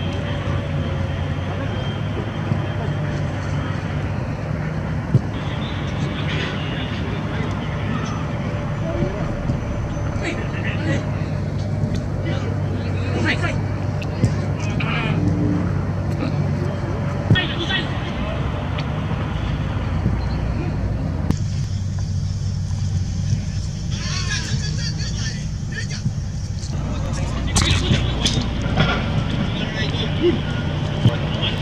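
Football training ambience: a steady low rumble with scattered sharp thuds of a ball being kicked, and players' faint calls.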